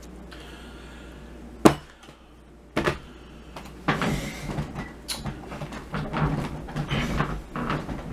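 A camera being handled and positioned at close range: two sharp knocks, one under two seconds in and one about three seconds in, followed by irregular rustling and fumbling.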